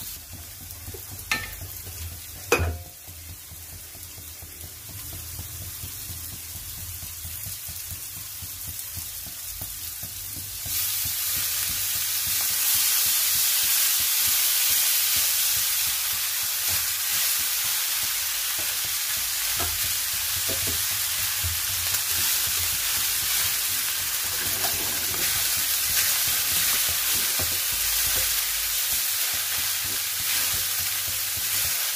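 Onion and peppers frying in olive oil in a pan, with stirring. The frying is quieter at first, with a couple of knocks; about ten seconds in, a loud sizzle starts suddenly and keeps on.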